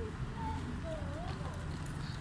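Outdoor street ambience: a steady low background hum with faint, brief voices of passers-by.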